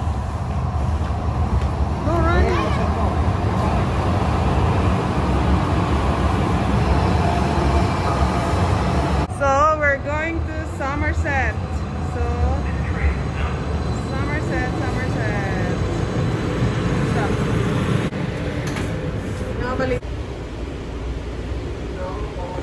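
Calgary Transit C-Train light-rail train pulling into the platform, a steady low rumble that eases off near the end, with voices about ten seconds in.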